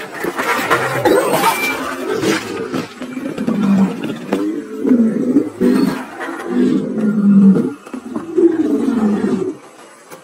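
A film dragon's growling roars: a run of short low calls that bend in pitch, one after another, following a few seconds of rustling, rushing noise. The calls cut off shortly before the end.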